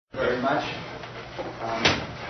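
A voice speaks briefly in a room, then a single sharp knock comes near the end.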